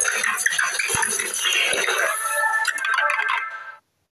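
Channel ident soundtrack: a dense, busy clatter of clinking and rattling, as of many small objects knocking together, with chiming musical tones coming in about halfway through. It all cuts off suddenly just before the end.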